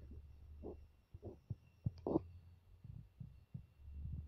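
A few soft knocks as a perforated aluminium lid is handled and set over a pan on a gas stove, over a faint steady low hum. The loudest knock comes about halfway through.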